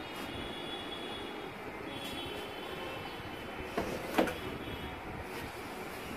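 Tape and edge of a frameless Skyworth LED TV panel being peeled and pried open by hand: a steady rasping noise with a faint high squeal, and two sharp clicks about four seconds in.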